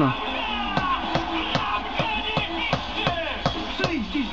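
A hammer knocking basalt paving cobbles down into a bed of basalt grit, a sharp knock two or three times a second. A radio plays music and voices underneath.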